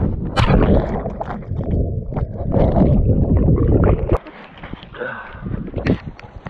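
Loud, deep churning and splashing of water around the microphone as a person dunks into ice-cold lake water with the camera in hand. It cuts off abruptly about four seconds in.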